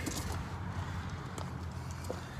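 Low, steady background hum with faint even noise and a single faint click about a second and a half in; no distinct sound stands out.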